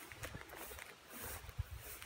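Quiet outdoor ambience with soft footsteps through grass and a few faint knocks, over a low, uneven rumble.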